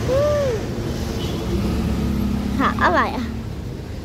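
Low, steady engine and road rumble of a car creeping along in traffic, with a short rising-and-falling voice sound right at the start and a few quick voice sounds about three seconds in.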